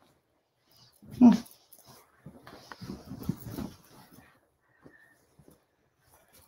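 A woman's brief "hmm" about a second in, followed by the rustle and shuffle of a heavy quilt being handled and turned over on a table for a second or two, then only faint small sounds.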